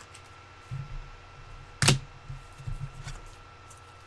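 Objects being handled on a tabletop: a few soft low bumps and one sharp click about two seconds in.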